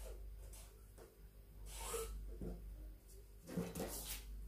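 Felt-tip marker drawn along a plastic French curve on pattern paper: faint scratchy strokes with soft paper and ruler rustles, the loudest just before the end.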